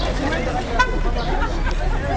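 Crowd chatter around parked rally cars, with one short car horn toot a little under a second in.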